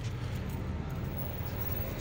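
Steady outdoor background noise: a low rumble with a faint, even hiss over it, with no distinct events.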